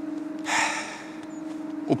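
A man's sharp intake of breath about half a second in, during a pause in reading aloud, over a steady low hum; his speech resumes right at the end.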